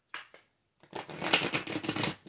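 A tarot deck being shuffled by hand: two short flicks of the cards, then about a second of continuous shuffling from midway on.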